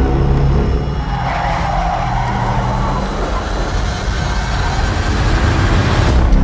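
Car driving on the road with a steady low rumble, and a tyre squeal about a second in that fades over the next couple of seconds.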